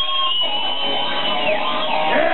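Distorted electric guitar in a live metal band holding a high sustained note with vibrato, then sliding down in pitch about one and a half seconds in, over the drums and band.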